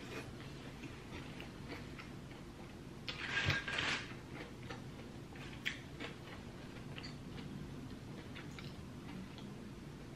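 Close-up eating sounds: chewing a forkful of lettuce salad, with small wet mouth clicks. A brief louder crunchy rustle comes about three seconds in.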